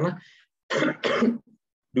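A man clearing his throat once, a short rough burst lasting about half a second, a little under a second in.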